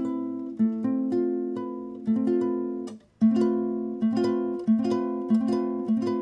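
Nylon-string classical guitar with a capo, picked note by note so the notes ring into each other, trying out an A-minor-based chord with an added ninth. The playing stops briefly about three seconds in, then resumes with notes coming more quickly.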